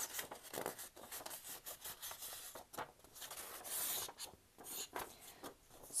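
A sheet of colored construction paper rustling and crackling as it is handled and folded in half, with a longer rubbing hiss about two-thirds of the way through as the fold is pressed.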